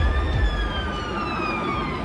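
Police siren wailing: one long tone that rises briefly, then falls slowly in pitch, over a low rumble.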